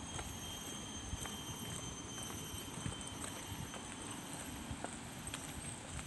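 Footsteps on stone paving, a sharp click at each step at an uneven pace, over a steady low rumble and a faint high whine.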